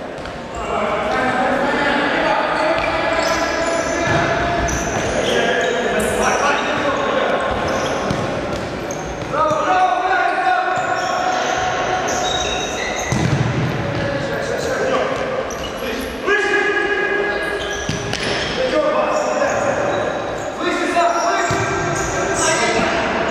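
A futsal ball being kicked and bouncing on the wooden hall floor, with shouting voices on and around the court, all echoing in a large sports hall.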